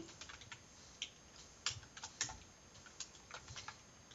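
Computer keyboard being typed on: faint, irregular key clicks.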